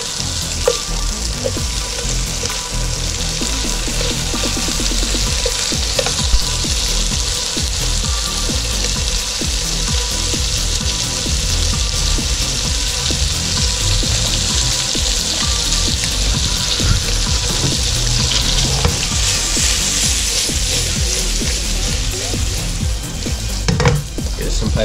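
Pieces of blue throat wrasse fillet sizzling steadily as they fry in a non-stick pan.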